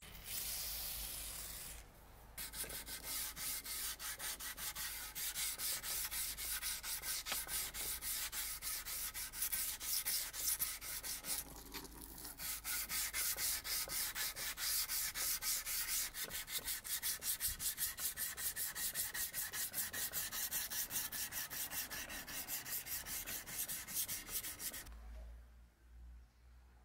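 Abrasive paper on a block rubbed back and forth by hand along a steel knife blade clamped in a vise, hand-sanding the blade's finish, at about three strokes a second with a short break about halfway. The first two seconds hold a steady hiss.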